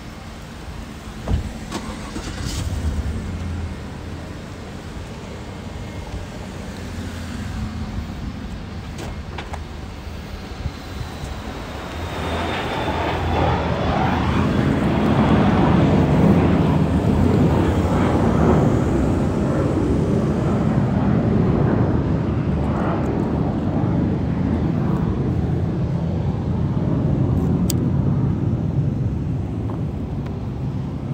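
Motor vehicle engine running close by: a steady low hum that swells louder about twelve seconds in and stays up.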